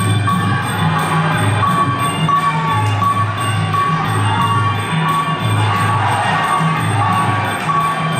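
Traditional Kun Khmer ring music: drums beating a steady repeating pattern under a high held melody line, with small hand cymbals keeping time.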